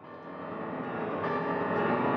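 Grand piano being played, fading in and growing steadily louder, with many notes ringing together.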